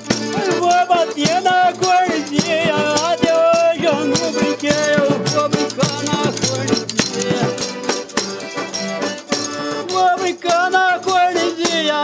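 Calango music: a man sings a verse over a piano accordion, with a rattling hand percussion instrument keeping the beat.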